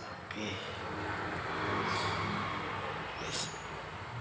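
Honda Vario 150 scooter engine idling with a steady low hum, under a rushing noise that swells and fades about two seconds in, and a light click near the end.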